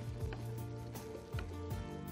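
Background music with steady held notes, and a few light clicks of a spatula against a frying pan as food is stirred.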